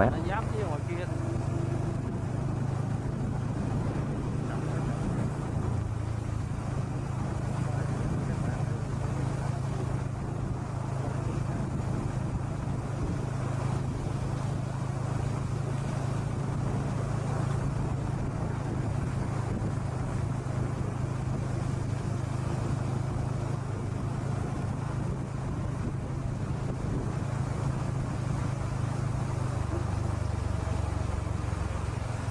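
Steady low engine drone with road and wind noise from the vehicle carrying the camera, cruising at an even speed.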